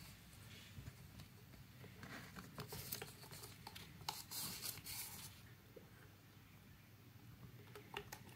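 Faint rustling and crinkling of gold foil heat-reflective tape being handled, its paper backing peeled away as the strip is pressed around a silicone pipe, with scattered small clicks and two short louder rustles about three seconds in and again from four to five seconds.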